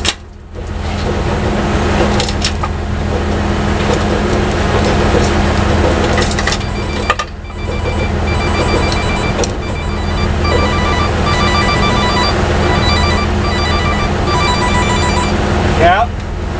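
A truck engine idling with a steady low hum. From about eight seconds in until near the end, a phone ringtone of rapid repeating electronic beeps plays over it.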